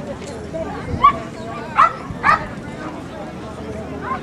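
A dog barking three times in quick succession, short sharp barks about a second in and near the middle, over a background of crowd chatter.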